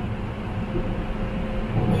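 Running noise inside a moving Rapid Metro train car: a steady low rumble with a thin, steady hum over it.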